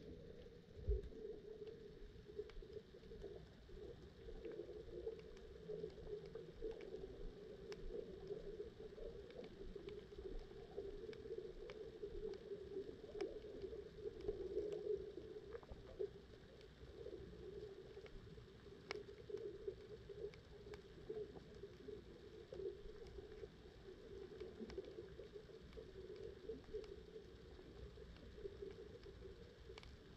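Faint underwater ambience picked up by a submerged camera: a steady low hum with scattered faint clicks, and a soft thump about a second in.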